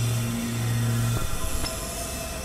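Experimental electronic noise music from a synthesizer: a low, steady drone note held over a dense hissing, crackling noise bed, cutting off a little over a second in.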